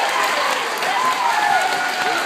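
An audience of schoolchildren applauding, steady clapping with high children's voices calling out over it.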